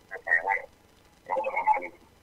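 Speech only: two short spoken phrases over what sounds like a phone or radio line, with a gap between them.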